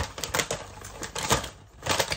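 Irregular sharp crackles and crunches from a plastic crisp packet being handled, with crunchy chickpea crisps being chewed.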